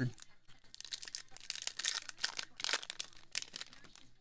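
Trading card pack wrapper crinkling and cards sliding and flicking against each other as a pack is handled: a run of irregular, crackly rustles with sharp little snaps.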